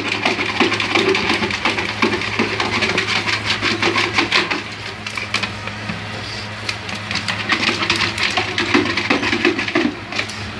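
Red plastic bucket scraping and knocking on a tiled floor as a pug pushes it about with its head inside, a rapid, rattly run of clicks and scrapes over a steady low hum.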